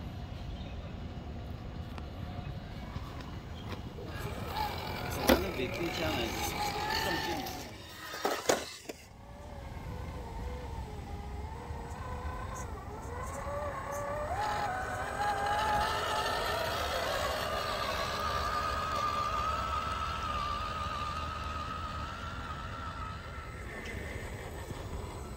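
Electric motor and gear drivetrain of an MST CFX scale RC crawler whining, its pitch rising and falling with the throttle as it climbs over rough ground. There is a sharp knock about five seconds in, and the whine grows louder and higher in the second half.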